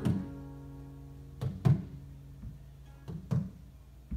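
Acoustic guitars strumming slow chords with no singing. The chords are struck in pairs about every second and a half, and each is left to ring.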